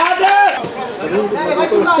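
Voices calling out: one loud, held shout at the start, then several voices talking and shouting over each other.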